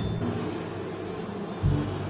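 Low, steady rumble, with background music coming back in about a second and a half in.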